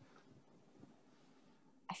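Near silence: faint room tone over a call microphone, with a couple of very soft small sounds and a voice starting at the very end.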